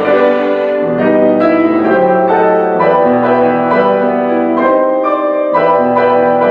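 Piano quartet playing classical chamber music, the piano to the fore with chords struck about twice a second over sustained bowed strings.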